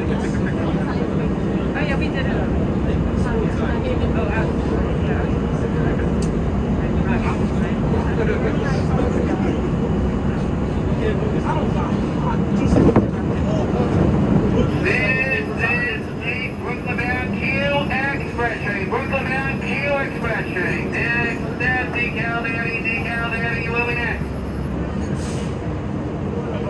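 Budd R32 subway car running, a steady rumble of wheels and motors heard from inside the car. About halfway through the rumble eases a little, a thin high whine sets in, and a long run of short, high squeaking chirps follows.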